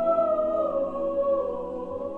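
Mixed chamber choir singing slow, sustained chords, the harmony shifting down slightly about a third of the way in.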